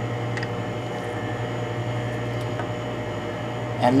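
A steady low mechanical hum, like room ventilation or equipment running, with a couple of faint light clicks as plastic markers are handled.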